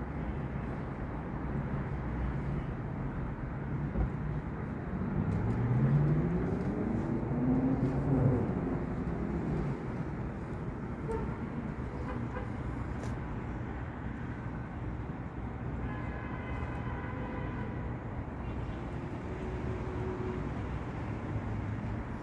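Steady outdoor traffic hum. About five seconds in, a motor vehicle's engine passes close, climbing in pitch as it speeds up for about three seconds before cutting off.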